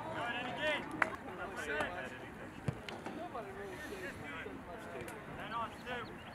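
Distant shouts from players and spectators across an open soccer field, with a couple of sharp knocks from the ball being kicked, about a second in and again near three seconds.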